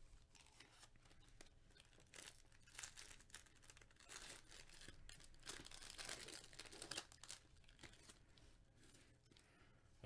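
Foil wrapper of a 2021 Topps Series 1 jumbo baseball card pack being torn open and crinkled by gloved hands: faint, irregular crackling and tearing, busiest in the middle.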